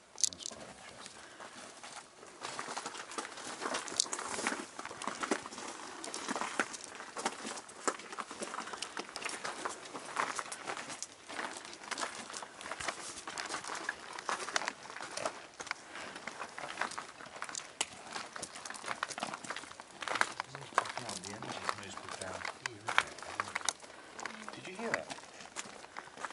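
Continuous irregular rustling and crackling clicks of a handheld camera being carried and handled on the move, close on its built-in microphone.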